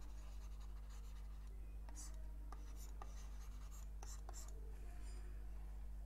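Faint scratches and taps of a stylus writing on a tablet, a handful of short strokes in the middle seconds, over a steady low electrical hum.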